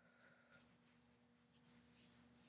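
Near silence, with faint soft scratching of fingertips rubbing moisturizer cream into facial skin: two brief strokes in the first half second and a light rustle near the end.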